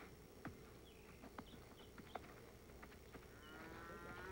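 Near silence with a few faint clicks; near the end a faint, held trumpet note comes in.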